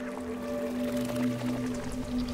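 Film soundtrack of slow, sustained held tones layered into a steady drone, with a deeper low note swelling in about halfway through.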